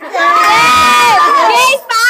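Boys shouting and cheering together in one long, loud yell lasting about a second and a half, followed by a shorter shout near the end.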